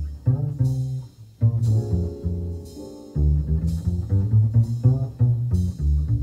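1955 jazz recording with a plucked double bass prominent in the low end under sustained chords, and light cymbal strokes about once a second. The music thins briefly about a second in, then returns.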